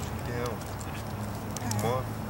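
Light clinks of a dog's chain collar as the dog shifts about, over a steady low hum. A couple of short voiced sounds come about half a second in and near the end.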